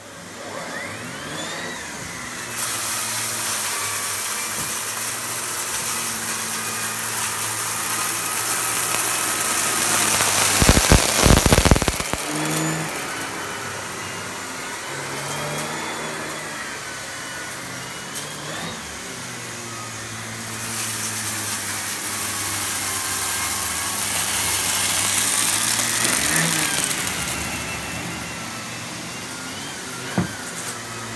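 Miele C3 Complete cylinder vacuum cleaner with a turbo brush, starting up and then running while vacuuming carpet, its whine rising and falling as the brush head is pushed back and forth. A louder rough burst lasts about a second and a half, around ten seconds in.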